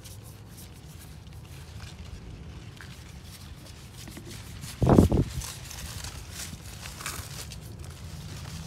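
Quiet rustling and handling noise over a low, steady rumble, with one brief loud thump about five seconds in.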